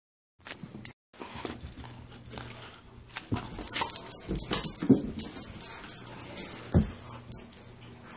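Two Siberian huskies playing: breathy dog noises and a few short, low vocal sounds amid scuffling, sparse at first and busier from about three seconds in.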